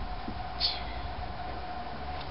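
Steady background rumble and hiss with a constant mid-pitched hum, and a brief high-pitched sound about half a second in.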